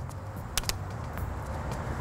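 Preformed helical rods being worked by hand onto a stranded metal conductor, giving two sharp metallic clicks about half a second in, over a steady low outdoor rumble.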